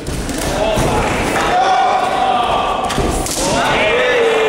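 Men shouting from around a fight cage, with long yelled calls echoing in a large hall. Two dull thumps come through, one at the start and one about three seconds in.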